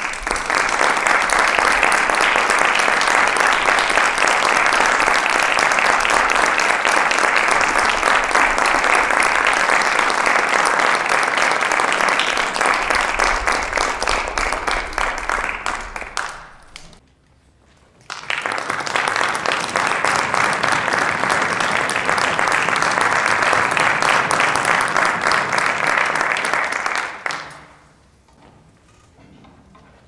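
Audience applauding at the end of a chamber orchestra piece. The clapping dies away about sixteen seconds in, then starts up again a second or so later for another round that fades just before the end.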